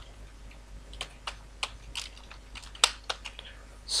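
Computer keyboard being typed on: a short run of separate key clicks at an uneven pace.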